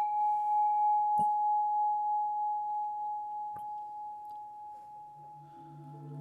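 A struck metal chime rings once with one clear, bell-like tone that fades slowly over about five seconds, sounded to open the sending of 'invisible power'. About five seconds in, a low drone and soft ambient music with singing-bowl tones begin to rise.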